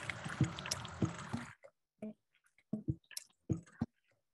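Playback of a layered loop: a field recording of water drops falling on a microphone, combined with notes from bull kelp tubes cut to different tunings. A dense wet, noisy texture with a few sharp drops runs for about a second and a half, then gives way to sparse low knocks.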